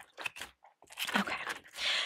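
Crinkling and rustling of clear plastic cash-binder pockets as a page is turned and paper bills are handled, in several short, crisp strokes.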